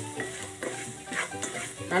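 Wooden spatula stirring and scraping capsicum strips in a hot kadai, the vegetables sizzling, with a couple of sharper scrape strokes past the middle. Soft background music with held notes plays underneath.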